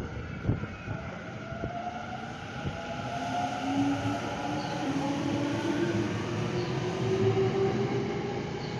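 Tokyo Metro 10000 series electric train pulling out of the station and accelerating, its traction motors giving a whine that slowly rises in pitch over the running rumble, getting louder as it speeds up. A few sharp knocks come in the first couple of seconds.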